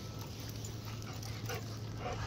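A dog whimpering faintly, a couple of short soft whines about a second and a half in, over a low steady hum.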